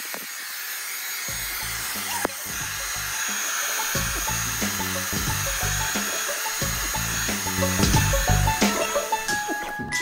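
Handheld hair dryer blowing steadily, with background music coming in about a second in.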